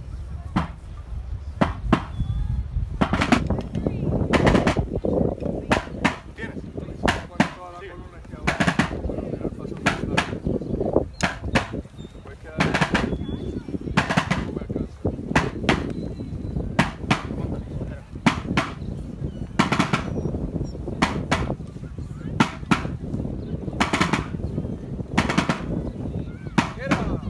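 Military side drum beating a marching cadence: sharp strokes at uneven spacing, some in quick pairs, all the way through. A steady low rumble of wind on the microphone lies underneath.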